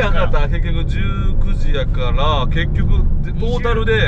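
Men's voices chatting and exclaiming in snatches over the steady low rumble of road and engine noise inside a moving van's cabin.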